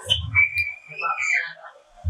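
A young man's voice through a handheld microphone and PA, with a high whistle-like tone that rises and falls for about a second, starting about half a second in.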